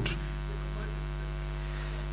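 Steady electrical mains hum with a ladder of many evenly spaced overtones, heard through the microphone and sound system.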